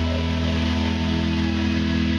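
Live reggae band music in which a keyboard chord is held steady, its notes sustained without a break.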